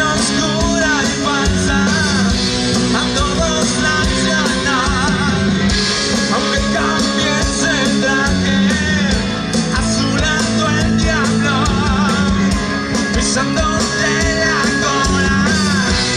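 Rock band playing live: electric guitar and drum kit, with a male voice singing over them.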